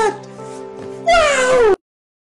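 A drawn-out, meow-like cry that falls in pitch, heard twice over steady background music. Both cut off suddenly near the end.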